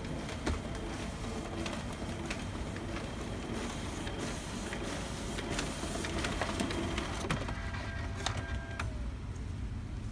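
Panasonic KV-S2087 sheet-fed document scanner feeding a batch of pages: a steady mechanical whirr of the feed rollers with repeated clicks as the sheets go through. Late on, a steady whine lasts a second or two and then drops away in a short falling tone.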